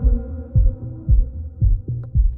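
Heartbeat sound effect in an edited soundtrack: low, paired thumps about twice a second, under a sustained musical drone that fades away.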